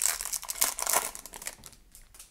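Shiny foil wrapper of a hockey card pack crinkling as it is torn open by hand, dying away near the end.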